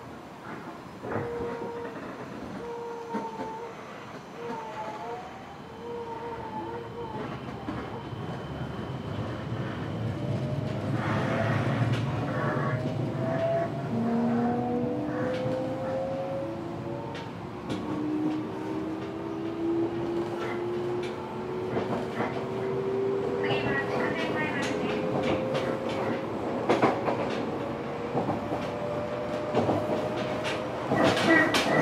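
Fukuoka City Subway 1000N series electric train heard from inside the car as it pulls away and accelerates: the traction motor and inverter whine climbs in several rising tones while the running rumble builds. Wheels click over rail joints now and then.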